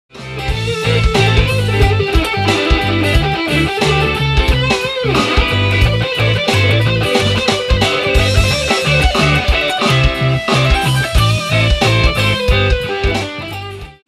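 Electric guitar (a Fender Stratocaster) playing a fast sixteenth-note lead lick over a swung-triplet backing track, the straight sixteenths deliberately forced against the swung feel. It starts and stops abruptly.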